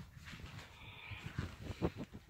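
A dog breathing in a few short, irregular breaths, the strongest near the end.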